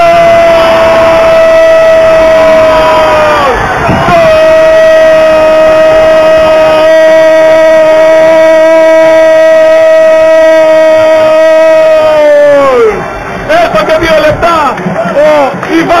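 A man's voice shouting a long held goal call for a goal just scored: one sustained cry of about three and a half seconds, then after a breath a second one of about nine seconds, each falling in pitch as the breath runs out. Excited talking follows near the end.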